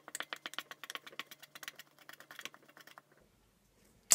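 A small utensil stirring dry flour and salt around a stainless steel mixing bowl, making a quick run of light clicks and scrapes against the metal that stops about three seconds in.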